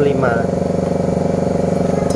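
A machine running steadily in the background, an even low-pitched hum that holds constant throughout.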